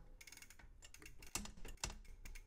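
Bicycle drivetrain clicking faintly as the crank is turned by hand: a quick, uneven run of ratcheting ticks from the freewheel and chain over the sprockets.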